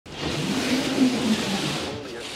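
A large cardboard bike box sliding and scraping across painted wooden floorboards, a rough continuous scrape with a wavering low rumble that eases off near the end as the box comes to rest.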